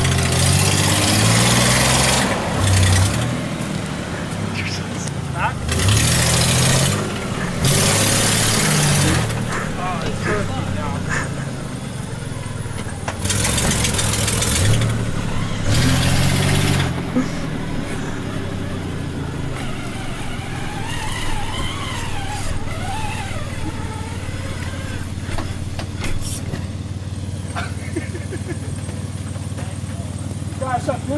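Nissan Pathfinder (WD21) engine revved hard about five times while the truck sits stuck in deep mud, each rev bringing a loud hiss of spinning tyres churning mud and water. It then settles back to a steady idle.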